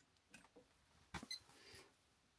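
Near silence, with a few faint clicks about a second in as a test probe touches metal pipework; one click carries a brief faint beep.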